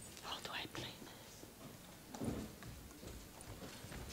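Faint, whispered talk away from the microphone in a quiet hall.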